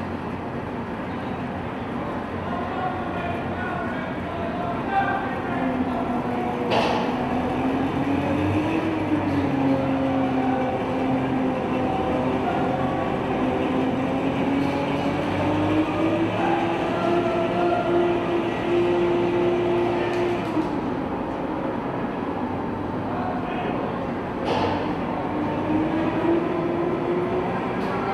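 AAV-7A1 amphibious assault vehicle's diesel engine running, with its steel tracks clattering as it pivots on a steel deck. The engine note rises and falls with the throttle. Two sharp metallic clanks come about a quarter of the way in and again near the end.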